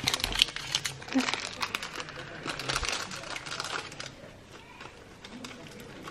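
Thin clear plastic candy packaging crinkling and crackling as it is peeled open and handled. The crackling is thickest over the first few seconds and thins out after about four seconds.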